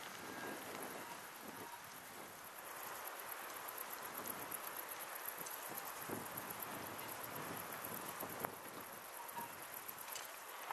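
Faint, steady outdoor hiss with light crackling and rustling throughout, and a sharper tick near the end.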